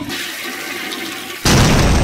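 Toilet flushing with a steady rush of water. About a second and a half in, a much louder blast of noise cuts in suddenly and keeps going.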